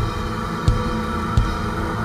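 Electronic music: a low, sustained drone of held tones, pulsed by a deep kick-drum-like thump about every 0.7 seconds.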